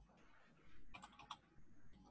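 Faint computer keyboard keystrokes: a quick run of four or five clicks about a second in, over near silence.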